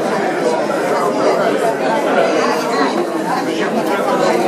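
Crowd chatter: many people talking at once, overlapping voices with no single speaker standing out.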